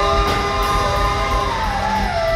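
Live improvising band playing: held lead notes over drums, with one sustained note sliding down in pitch near the end.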